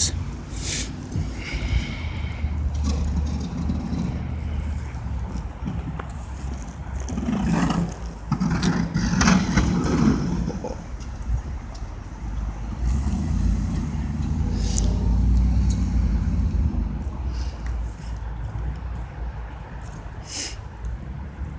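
Pickup truck with a front snowplow blade running and pushing snow, with a steady low rumble throughout. It is loudest as it passes close, about eight to ten seconds in, and swells once more a few seconds later before it fades off.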